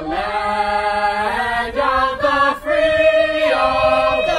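High school a cappella choir singing without instruments, holding sustained chords. The notes shift in the middle, with a brief dip, then settle into a long held note near the end.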